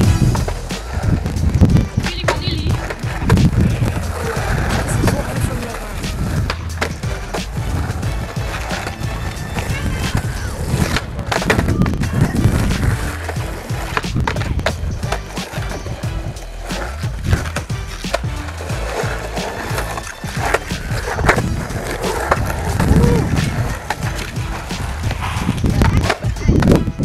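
Skateboard wheels rolling on asphalt as a low rumble, with frequent sharp clacks of the board's tail and wheels hitting the street during flatland freestyle tricks, recorded through an old camcorder microphone.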